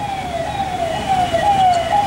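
Electronic siren sounding steadily, a pitched tone that falls over and over, about twice a second.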